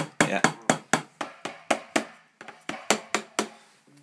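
Rapid run of about fourteen drum hits, roughly four a second, from sticks striking the pads of an Alesis DM10 electronic drum kit, its triggered drum sounds playing back from the PC.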